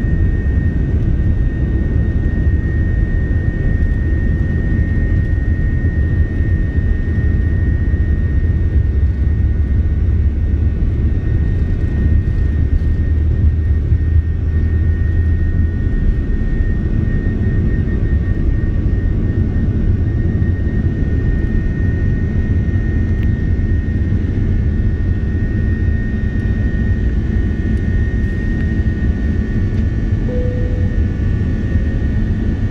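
Airbus A330-300 jet engines at takeoff thrust, heard from inside the cabin beside the wing: a steady loud roar with a high whine over heavy runway rumble. The rumble drops away about halfway through as the aircraft lifts off.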